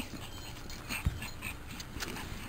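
Pomeranian puppy whimpering faintly in a few short, high squeaks, with a soft low thump about a second in.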